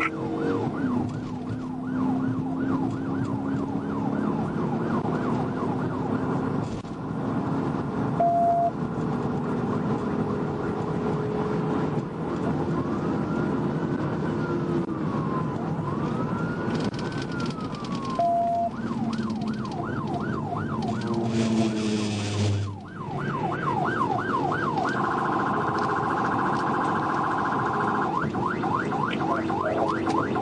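Police car siren on a patrol car in pursuit, heard from inside the car: a fast yelp for most of the time, changing to two slow wails about halfway through, then back to the yelp and a faster warble near the end. Engine and road noise run steadily underneath, with two short beeps.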